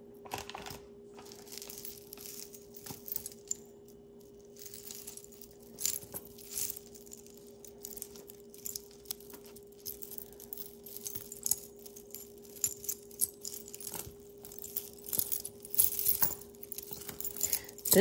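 Metal costume-jewelry chains, pendants and beads clinking and rattling against each other as fingers rummage through a tangled pile, in scattered light clicks that get busier about six seconds in and near the end. A steady low hum runs underneath.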